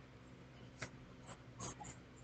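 Faint paper-handling noises: a few short soft rustles and clicks, the last a quick double, over a low steady electrical hum.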